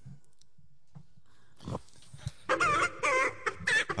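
Chicken clucking: a quick run of squawking clucks starting about two and a half seconds in, after a short laugh.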